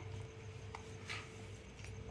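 A few faint clicks of small plastic toy cups and dishes being handled, over a low steady room hum.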